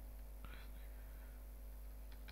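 Low room tone with a steady electrical hum, and a brief faint breathy sound about half a second in.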